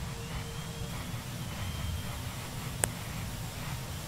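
Steady low rush and rumble of a simulated space shuttle launch pad, with the sound-suppression water deluge running beneath the main engines. A steady hum cuts off about a second in, a faint high whistle rises and holds, and a single sharp click comes about three-quarters of the way through.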